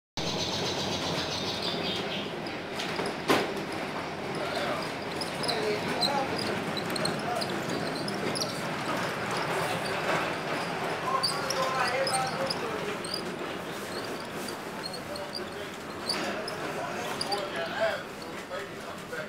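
Ride noise inside a vintage electric trolley car in motion: a steady running rumble with indistinct voices of other riders. A single sharp knock comes about three seconds in.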